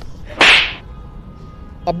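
A slap to the cheek, heard as one short hissy whoosh about half a second in.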